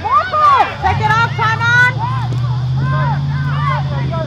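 Several voices shouting across a rugby pitch in overlapping, high-pitched calls, loudest in the first two seconds and again near the end. A steady low engine hum starts about a second in and runs underneath.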